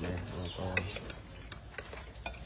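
Metal spoons clinking and scraping against ceramic plates and bowls as food is dished out, in scattered light taps. A brief low voice is heard in the first second.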